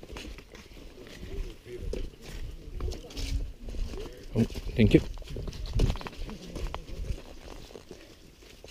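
Footsteps on a dry dirt forest trail, with low talk from other hikers and a louder word or two about five seconds in.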